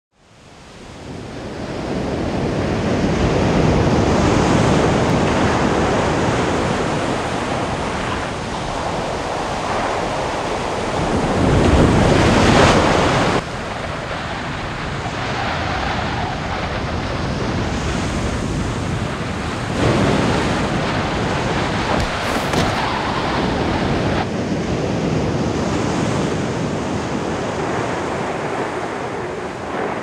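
Sea surf breaking on a beach with wind, the wash swelling and ebbing. It fades in at the start, and about twelve seconds in a louder surge cuts off suddenly.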